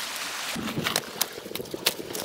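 Water washing gently on a pebble shore, giving way about half a second in to a wood campfire crackling, with a few sharp pops from the burning sticks.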